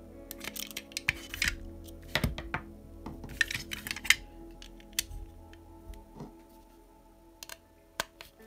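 Irregular light clicks and scrapes of a screwdriver and small tapping screws against a hard plastic RC car chassis as the screws are started into their holes, over steady background music.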